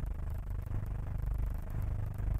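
Quiet, steady low hum with faint hiss and scattered faint clicks: the background noise of an old 1950s film soundtrack.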